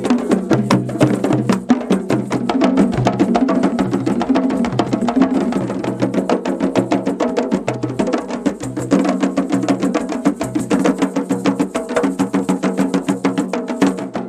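Ensemble of djembe hand drums played together in a fast, steady rhythm of sharp slaps and tones over a repeating pattern of low bass notes.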